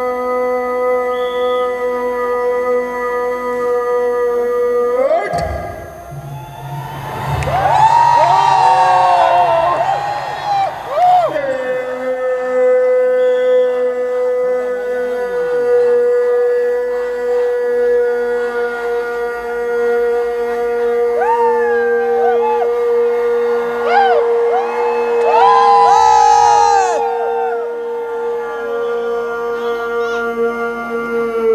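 A soldier's long, drawn-out ceremonial command shout, one steady note held for many seconds and carried over loudspeakers. It breaks off about five seconds in under a burst of crowd cheering and shouting. A second long held shout starts about twelve seconds in, with more crowd cheering rising under it later.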